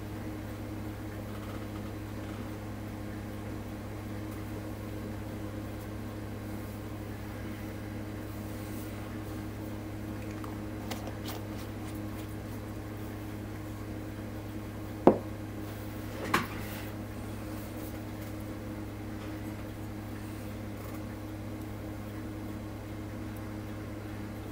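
Steady low mechanical hum, like a fan or appliance running in a small room, with two short clicks about fifteen seconds in, a second and a half apart.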